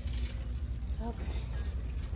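Low, steady background rumble, with one short spoken 'OK' about a second in.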